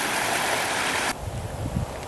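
A small, shallow stream running over rocks makes a steady rushing hiss. About a second in it cuts off suddenly, leaving a quieter, uneven low rumble.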